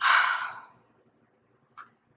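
A woman's heavy, exasperated sigh, a loud breath out that fades over about half a second, then a short breath in near the end.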